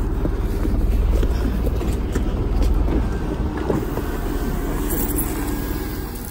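Car engine running close by, a steady low rumble.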